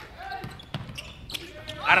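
Basketball bouncing on an indoor court during play, heard as a few sharp knocks about a second apart, with faint court noise in between.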